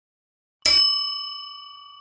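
A single bright bell ding sound effect, struck once about half a second in and ringing down slowly over the next two seconds: the notification-bell chime of an animated subscribe button.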